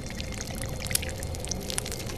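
Film sound effects of wet, slimy alien flesh: a run of squelches and crackles with a sharp crack about a second in, over a low rumble.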